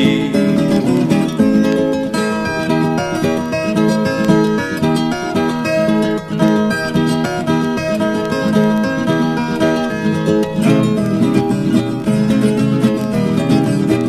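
Instrumental break of a pagode caipira: viola caipira and acoustic guitar playing the plucked, strummed pagode rhythm, with no singing.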